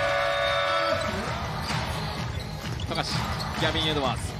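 A basketball bouncing on a hardwood court during live play, with short knocks and squeaks from about a second and a half in. Underneath runs music with a steady pulse, and a held chord sounds for the first second.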